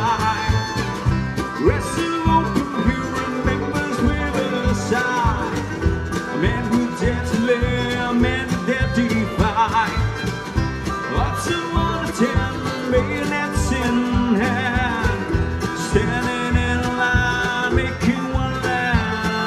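A bluegrass band playing live: banjo, fiddle, acoustic guitar and upright bass over a steady beat.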